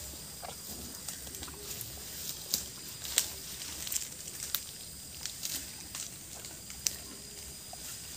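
Bali bull browsing leaves from a bush: irregular crackles and snaps of foliage being pulled and chewed, over a faint steady high-pitched tone.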